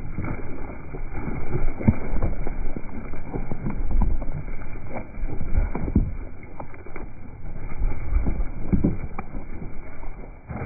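Zwartbles sheep flock hurrying past right next to a ground-level microphone: many irregular hoof thuds on grass with rustling of grass and wool.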